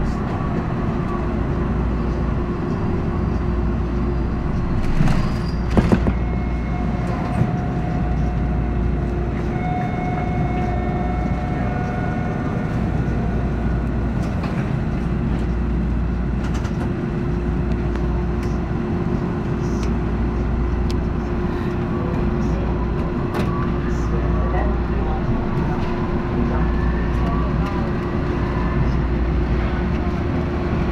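TTC H6 subway car running on steel rails through a tunnel: a steady rumble of wheels and motors with a constant hum. A few sharp clicks come about five to six seconds in, and a motor whine rises in pitch near the end as the train picks up speed.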